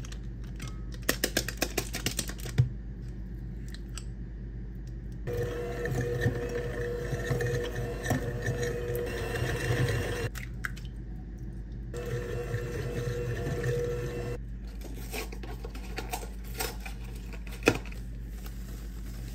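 Electric hand mixer beating softened butter in a glass bowl, running steadily for about five seconds from about five seconds in, then again for a couple of seconds a little later. Short clicks and crinkling of packaging come before and after the mixer runs.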